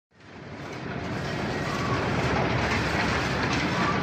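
Dense, steady mechanical noise of heavy machinery, fading in over about the first second.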